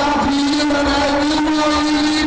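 A singer holding one long, steady note through the PA system, sliding up into it at the start, with no drum beat under it.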